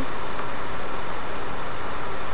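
Steady, even noise of a web-conference audio line, with no speech and no distinct events.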